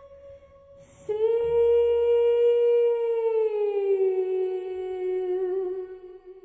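A long held musical note, from the amplified violin or the voice of a contemporary piece. An earlier note fades at the start; about a second in, a new note begins sharply, holds steady, then slides slowly down in pitch and fades near the end.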